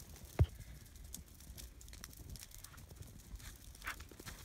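Faint sounds of a bundle of dry limbs being handled and tossed onto a brush pile in snow: a single dull thump about half a second in, scattered light crackles and ticks, and a short rustle of branches near the end.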